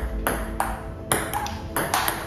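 Table tennis rally: a celluloid-type ping-pong ball clicking sharply off paddle and table, several hits about every half second.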